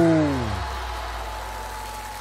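A drawn-out "oh" of amazement whose pitch rises and then falls, dying away about half a second in. It is followed by a low steady drone with a faint held high note, slowly fading.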